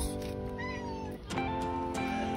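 A hungry cat meowing for food, a call that rises and then falls in pitch, over guitar background music.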